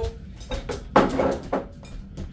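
Kitchenware handled on a wooden table: a few light knocks, then a sharp clatter about a second in as a bowl and items are set down, trailing into a brief scraping rustle.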